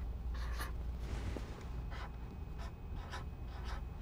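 Felt-tip marker drawing and writing in a series of short strokes on a white surface, over a steady low hum.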